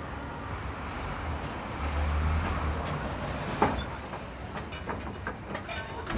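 Outdoor street noise from traffic, with a low rumble swelling about two seconds in. A single sharp click comes a little past halfway, and small ticks follow near the end.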